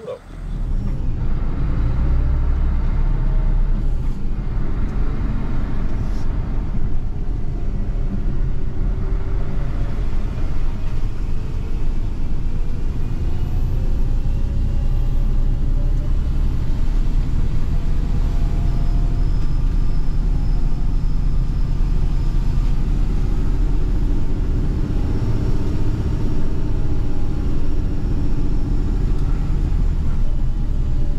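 Grab lorry heard from inside its cab while driving: a steady, heavy low rumble of engine and road noise, with a faint engine note that rises and falls.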